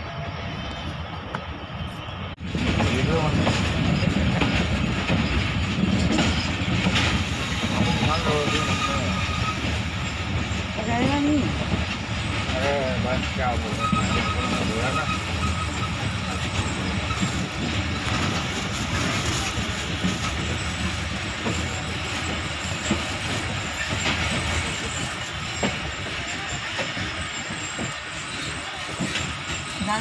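Running noise of a moving passenger train, heard from the side of a coach: wheels rumbling steadily on the rails. It gets louder a couple of seconds in, and faint voices can be heard under it.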